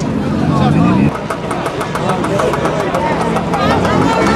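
A motor scooter engine revving, rising in pitch and cutting off suddenly about a second in, with people talking around it.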